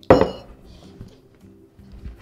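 A drinking glass set down hard on a wooden table: one sharp clink with a short ring just after the start, then only faint background music.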